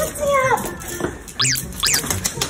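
Bichon Frise dog giving two short, high-pitched squealing whines that fall sharply in pitch, about a second and a half in and again near the end, the excited crying of a dog greeting its returning owner.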